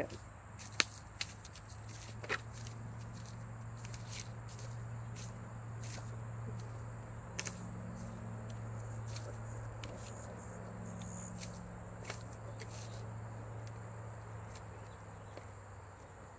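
Footsteps and brush crackling as someone pushes through undergrowth, as scattered sharp snaps and clicks over a steady low hum.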